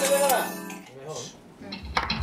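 A television channel's ident jingle plays through the TV speaker and ends about a third of a second in, followed by a brief lull with faint clinks of glassware. Sound picks up again near the end.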